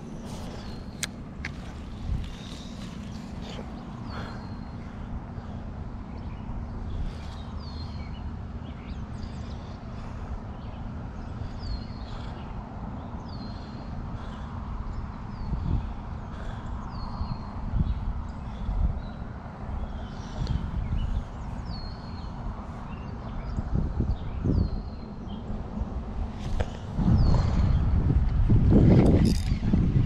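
A bird calling a short note that slides down and then holds, repeated every second or two, over a steady low rumble of wind on the microphone. The rumble swells louder near the end.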